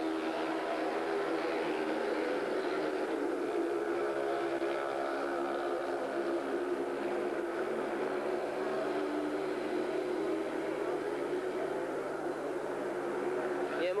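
A pack of 500 cc single-cylinder speedway motorcycles racing around the track, heard as a steady, continuous engine drone whose pitch wavers slightly as the riders go through the bends and along the straights.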